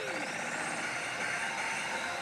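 Steady din of a pachislot parlor: a wash of machine noise and electronic game sounds from the rows of slot machines, with a short tone right at the start.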